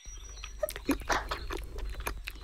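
Cartoon munching sound effect: a run of irregular chewing bites as a baby owl eats bread.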